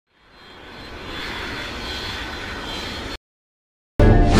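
A rushing, jet-like whoosh sound effect that fades in over about a second, holds steady, and cuts off abruptly about three seconds in.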